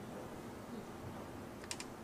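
A pause in speech with low steady room noise, and a quick cluster of small sharp clicks near the end.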